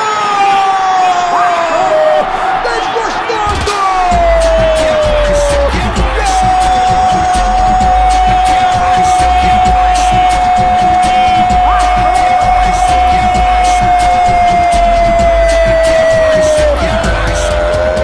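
A football narrator's drawn-out goal shout: a shorter falling cry, then one long note held for about ten seconds that sinks slowly in pitch. Music with a heavy bass beat comes in underneath about four seconds in.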